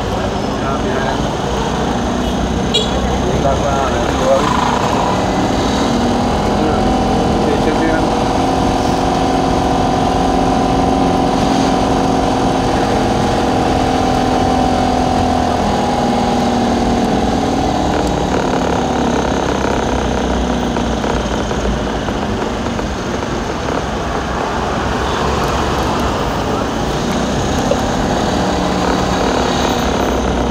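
Traffic and a vehicle's engine running, heard from inside a car moving through slow town traffic. A steady engine note holds through the middle of the stretch.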